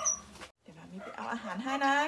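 A woman speaking in Thai, with a brief total dropout of the sound about half a second in.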